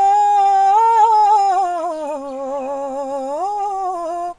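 A woman singing a Gojri folk song unaccompanied, drawing out one long vowel. She holds a steady note, steps up, then slides down through a wavering, ornamented line and climbs back up near the end.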